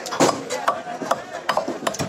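A fish being cut and scraped against the curved blade of a boti: a run of sharp, irregular clicks and rasps as the fish is drawn across the edge, the loudest about a quarter second in.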